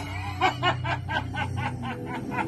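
A man's menacing villain's laugh, a quick run of short 'ha-ha-ha' pulses, about six a second, given in character as the Krampus after threatening to carry the children off.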